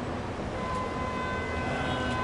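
Steady low rumble of city street traffic. Thin, steady high-pitched tones come in partway through and hold.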